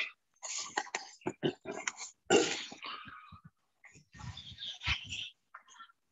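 A person laughing breathily in irregular bursts, heard through a video call's audio that keeps cutting in and out.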